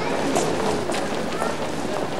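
Busy street ambience: steady noise with indistinct voices of passers-by in the background.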